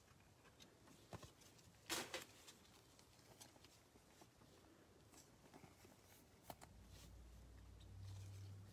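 Near silence, with a few faint clicks and one short rustle about two seconds in as a trading card and a plastic penny sleeve are handled. A low hum comes in near the end.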